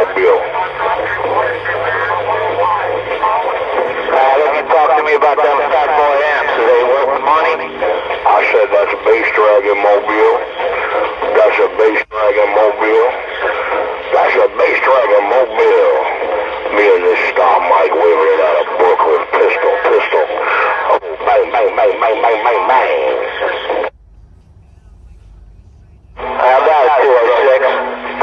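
A voice coming in over a Magnum S-9 radio's speaker, thin and narrow-sounding, talking steadily; the received signal drops away for about two seconds near the end, then the voice returns.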